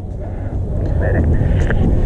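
Low rumbling noise on the microphone, growing louder, with faint voices in the background.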